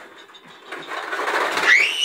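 A toddler's toy push lawnmower clattering as it rolls across a tile floor, its balls rattling inside the clear dome. Near the end a high-pitched squeal rises over the rattle.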